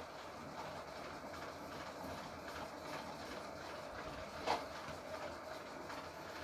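Quiet, steady background hiss and hum of the room and recording, with one short click about four and a half seconds in.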